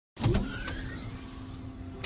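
Synthesized logo-intro sound effect: a loud whoosh with a deep rumble that starts suddenly, a faint rising whistle-like glide, and a sharp hit right at the end.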